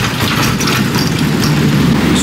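Walk-in freezer's refrigeration fans running with a loud, steady mechanical noise.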